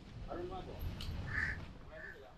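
Faint street background of distant voices and a low rumble, with a short nasal honk about one and a half seconds in.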